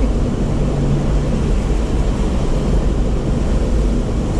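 Steady low rumble of a vehicle driving: engine and tyre noise heard from inside the cabin.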